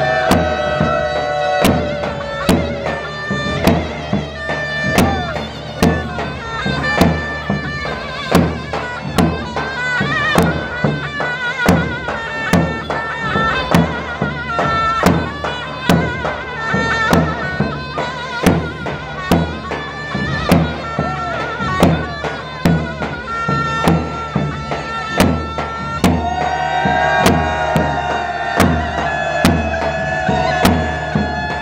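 Zurna (Turkish shawm) playing a loud, wavering folk dance tune over regular drum beats.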